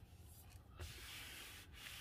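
Faint rubbing of a hand stroking leather interior trim, in two or three short strokes.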